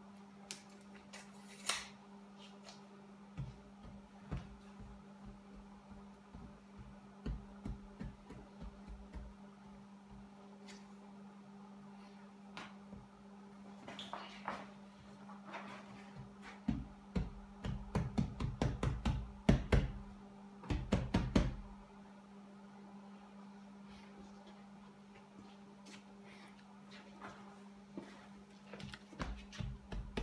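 Scattered knocks, taps and thunks of hands working on a convertible top and its vinyl rear window, with a burst of louder knocking about two-thirds of the way through, over a steady low hum.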